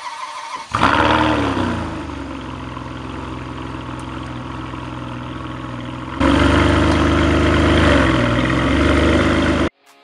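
Ferrari 612 Scaglietti's 5.7-litre V12 starting: it catches just under a second in with a brief flare of revs that rises and falls, then settles to a steady idle. About six seconds in the engine note steps up louder and holds, then cuts off abruptly shortly before the end.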